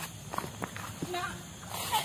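Footsteps on dirt and grass, a few steps in the first second, as someone walks while filming.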